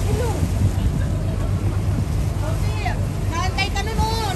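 Boat motor running steadily, with the rush of water and wind under it; voices come in during the second half.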